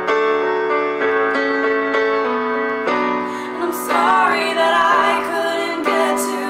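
Electronic keyboard played in slow, held piano chords. About two-thirds of the way through, a woman's voice joins with a long wavering sung note.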